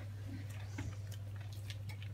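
Quiet room tone: a steady low electrical hum with faint, light ticking.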